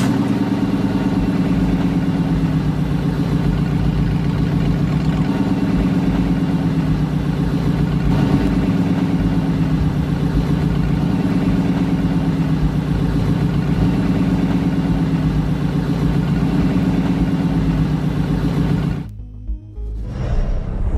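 Audi R8 sports car engine idling with a deep, steady hum, which cuts off abruptly about a second before the end.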